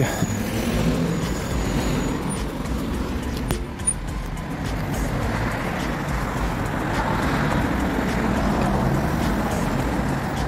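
Steady city street traffic noise, the low hum of road vehicles.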